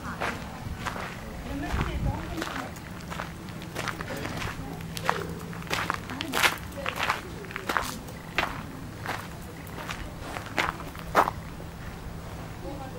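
Footsteps at a steady walking pace, about one and a half steps a second, on a gravel path, with a couple of louder steps about halfway through and near the end.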